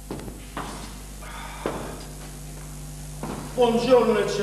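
Three knocks on the wooden stage, the second about half a second after the first and the third a second later, over a steady low hum. A man's voice comes in near the end.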